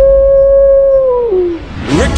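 A single wolf howl sound effect: it rises, holds one steady pitch, then falls away and ends about a second and a half in, over low music bass.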